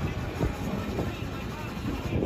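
Wind rumbling on the microphone, with scattered shouts from players on the pitch.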